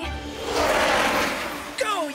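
Cartoon whoosh sound effect of a flying rocket racer: a noisy rush with a low rumble under it swells and fades out within about two seconds, over background music.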